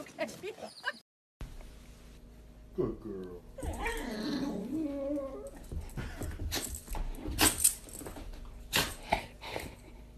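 A dog whining and whimpering, its pitch wavering up and down, then giving a run of short, sharp yips in the later part.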